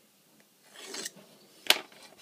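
A pencil drawn lightly along a ruler across leather: one short scratchy stroke about half a second in, then a sharp click near the end.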